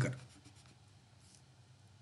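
A man's voice trails off, then a faint scratch of a stylus writing on a tablet about a second in, in a small quiet room.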